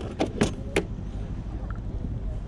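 A metal-framed wheeled trolley rattling as it is pushed over bumpy grass: a few sharp clanks in the first second, over a steady low rumble.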